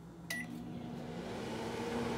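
Microwave oven keypad beeps once as START is pressed, about a third of a second in, and the oven then starts running with a steady hum.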